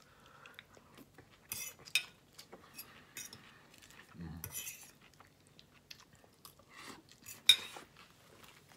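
A metal utensil clinking and scraping against a bowl as salad is picked up, with a few bites of crunchy chewing. A sharp clink near the end is the loudest sound.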